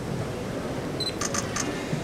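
A quick run of camera shutter clicks about a second in, over a steady background hubbub of a crowded hall.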